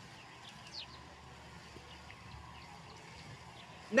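Quiet outdoor background with a few faint, short bird chirps in the first second.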